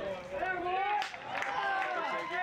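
Indistinct men's voices talking and calling out over light crowd noise, some calls drawn out.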